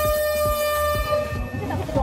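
An air horn sounds one long, steady blast as the start signal after a countdown, cutting off shortly before the end, with voices around it.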